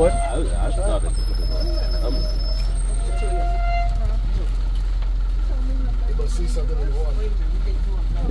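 Steady low rumble of an open-sided safari game-drive vehicle's engine, with faint passenger voices over it.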